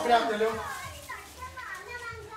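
Several voices talking over one another in lively chatter, loudest just after the start.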